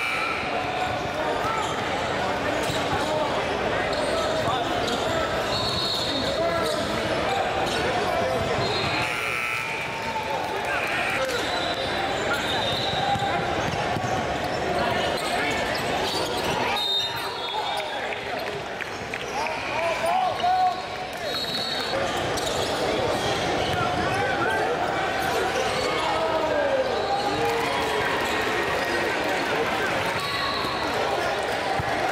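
Live basketball game sound on a hardwood gym court: the ball dribbling, sneakers squeaking in short high chirps, and players, coaches and spectators talking and calling out throughout.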